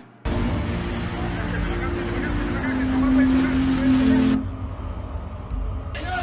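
Soundtrack of flood and mudflow news footage played over a room's loudspeakers: a steady wash of noise with several held tones on top. It changes pitch about two and a half seconds in and cuts off sharply after about four seconds, leaving quieter noise.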